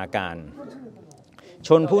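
A man reading aloud in Thai. A word ends about half a second in, and he pauses for about a second before reading on near the end.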